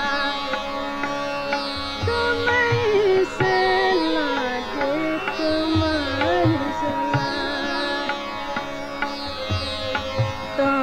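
A woman's voice singing a Hindustani light-classical dadra in raag Khamaj, with sliding, ornamented phrases, over a steady drone and recurring low drum strokes.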